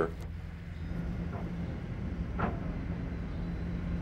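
Steady low mechanical hum of heavy machinery running.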